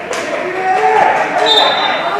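Players calling out on a football pitch, with a single thud of the football just after the start.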